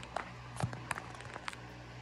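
Handling noise of a smartphone being gently set down and adjusted, picked up by its own microphone: a few soft clicks and knocks spread across two seconds.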